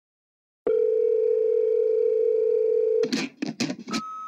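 A steady electronic tone held for about two and a half seconds, then broken off by three short hissing bursts near the end.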